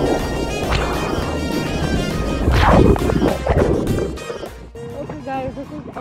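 Background music over rushing, splashing water, with a louder burst about two and a half seconds in; a voice comes in near the end.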